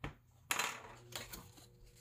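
A sharp click about half a second in, then a pen scratching as it draws on thick folded paper.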